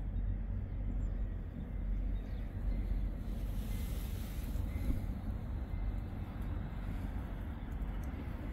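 Wind buffeting the phone's microphone: a steady low rumble, with a brief rise in hiss about halfway through.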